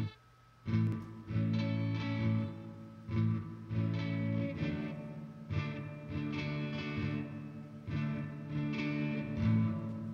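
Electric guitar chords strummed through a Behringer DR600 digital reverb pedal, one every second or two. They play dry at first, then with the pedal switched on in its spring reverb mode, ringing on with spring reverb.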